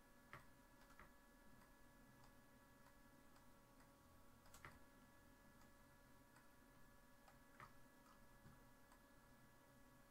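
Near silence with a few faint, scattered clicks from a computer mouse as the character is posed in the animation software, the loudest about halfway through, over a faint steady whine.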